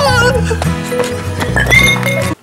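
A horse whinny with a quavering, falling pitch over background music with a steady beat; a shorter rising call near the end.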